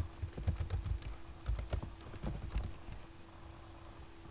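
Typing on a computer keyboard: a quick run of key clicks over the first three seconds, thinning out near the end, with a faint steady hum underneath.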